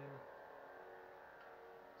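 Faint, steady electronic hum of a Proffieboard-driven lightsaber's sound font, played from the hilt's speaker while the blade is lit.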